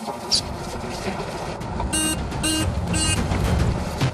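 Three short electronic alarm beeps, about half a second apart, starting around two seconds in: a warning sound effect. Under them runs a low, steady rumble.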